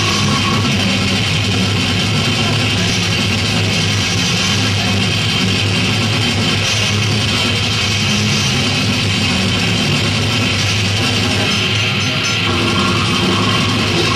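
Live brutal death metal band playing: heavily distorted guitars with drums and cymbals in a dense, loud, unbroken wall of sound, recorded from within the audience.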